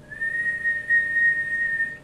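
A single high whistled note, held steady for about two seconds after a slight rise at its start, then cut off.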